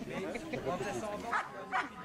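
A dog barking twice in quick succession, short sharp yips, about a second and a half in, over background chatter.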